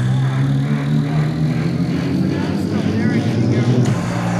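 Live electronic music played from laptops, with a low bass line carrying on underneath a chopped, voice-like sample whose pitch wavers about three seconds in.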